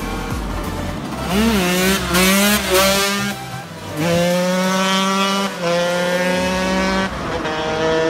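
KTM 125 EXC's single-cylinder two-stroke engine revving up and down, then held at high revs in steady stretches. The note breaks off briefly twice, near the middle and about a second before the end.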